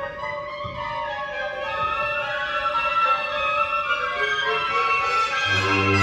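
A school ensemble playing a concert piece with sustained notes, growing gradually louder. Strong low sustained notes come in near the end.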